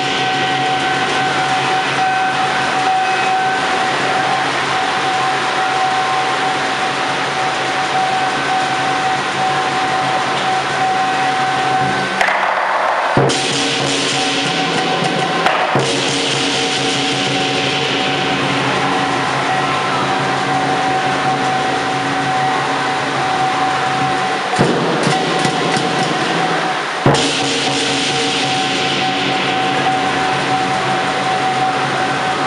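Lion dance percussion: a large Chinese drum beaten continuously with crashing cymbals, a dense, loud, unbroken din. It changes abruptly a few times partway through.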